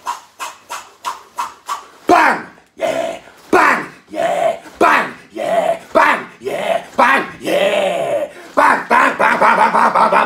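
A man giving a string of loud, wordless shouts, growls and bellows while brandishing a large cleaver. It opens with a quick run of short, sharp sounds, then settles into a series of calls with falling pitch, roughly one a second.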